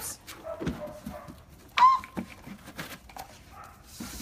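A dog giving one short, sharp bark about two seconds in, the loudest sound, with softer whimpering and small scuffing noises around it.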